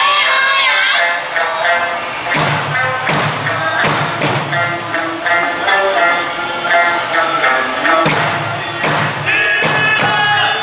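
Okinawan eisa folk song with singing, played loud over a sound system, with a few heavy drum strikes landing at irregular moments.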